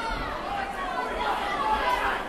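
Boxing crowd: many spectators' voices chattering and calling out at once.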